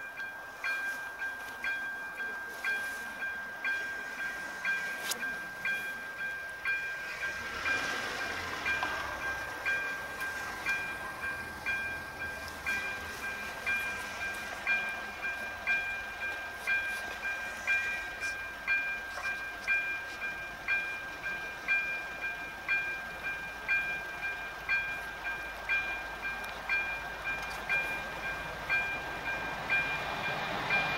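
Electronic warning bell of a railway level crossing ringing with even, quick strikes, about one and a half a second, over a steady high tone: the crossing is closed for an approaching train. A car passes about eight seconds in.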